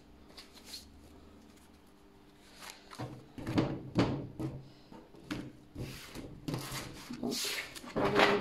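A deck of oracle cards being shuffled by hand: after a quiet start, irregular rustles and slaps of cards begin about three seconds in and continue.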